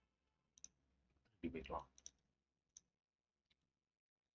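Faint computer mouse clicks, about five single clicks spread across a few seconds, with one short spoken word partway through.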